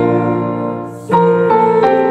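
Hymn sung by a duet of women's voices over piano or keyboard accompaniment. A held chord fades out about a second in, and the next phrase comes in sharply.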